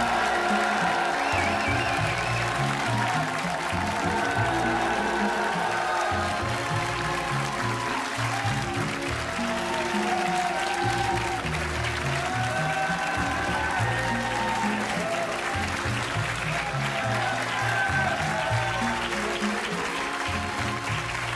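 Entrance music playing while a studio audience applauds continuously.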